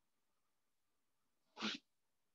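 Near silence, broken once near the end by a single brief vocal burst from a person, a short sharp sound lasting about a quarter of a second.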